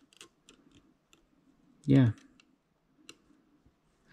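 Light clicks of a mostly metal toy starship model being handled and settled on its clear plastic display stand: a few scattered clicks in the first second and one more about three seconds in.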